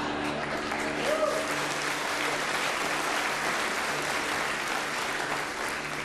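Theatre audience applauding with steady, dense clapping.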